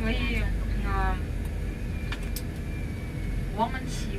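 Steady low rumble of a moving tour coach's engine and road noise, heard inside the cabin. Brief snatches of a voice come in the first second and again near the end.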